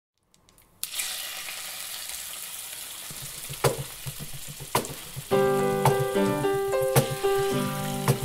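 Food sizzling in a hot pan, starting suddenly just under a second in, with a few sharp knocks. About five seconds in, a music melody of held notes joins the sizzle, as the opening of a show's intro jingle.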